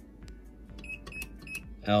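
Keys pressed on a Puloon ATM keypad, each press giving a short high electronic beep: a quick run of about four beeps a little under a second in.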